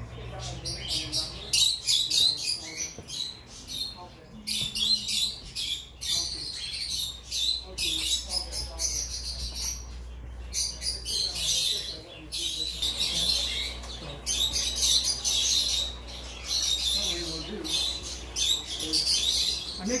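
Small caged pet birds chirping rapidly and continuously in many overlapping high-pitched calls, over a steady low hum.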